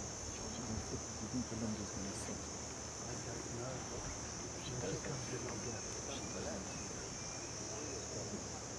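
Steady high-pitched insect trilling, like a cricket chorus, over a faint murmur of distant voices.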